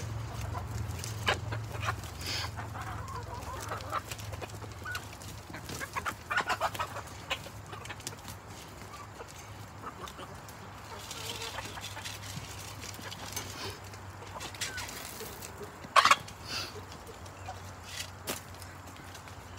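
Hens clucking on and off as they are fed scraps by hand, with a quick run of calls partway through and one sharp, louder sound near the end.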